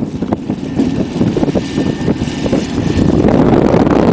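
Small narrow-gauge diesel locomotive of an island light railway running past with a flat wagon. Its engine drone grows louder about three seconds in as it comes close.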